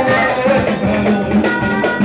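Amplified live band music: a bowed violin line with keyboard, hand drums and drum kit keeping a steady beat.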